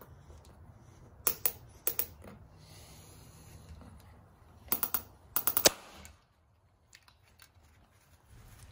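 Sharp plastic clicks as the parts of a glue-tab dent puller kit are handled and fitted together: a few clicks about a second in, then a quick run of clicks around five seconds in.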